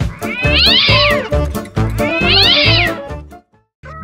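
Two cat meows, each rising then falling in pitch, about a second and a half apart, over upbeat background music. The music stops a little over three seconds in.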